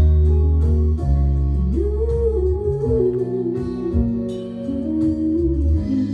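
Slow live band music with deep bass notes and guitar; about two seconds in, a woman's voice comes in, singing a long, wavering line with vibrato.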